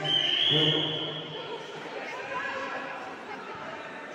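Voices echoing in a sports hall: a loud man's voice with a high steady tone over it in the first second, then quieter mixed voices.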